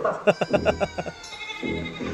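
Goat bleating on a film's soundtrack, heard through the cinema speakers: a rapidly quavering call about a second long that trails off in a falling tone.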